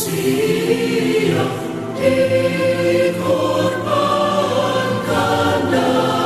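Music with a choir singing a Christian song in long held chords that change every second or two.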